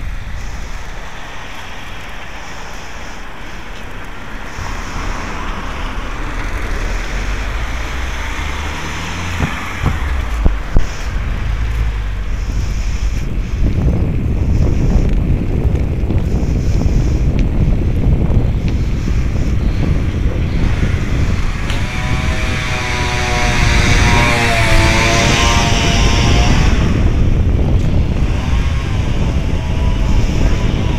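Wind buffeting the microphone of a moving camera: a steady low rumble that grows heavier about halfway through, with two sharp knocks about ten seconds in. Near the end a wavering pitched sound with several overtones rises over the rumble for a few seconds.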